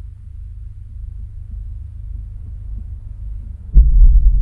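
Low, throbbing rumble that slowly swells, broken near the end by a sudden sharp hit that leaves a much louder deep rumble, like the drone and impact of horror-film sound design.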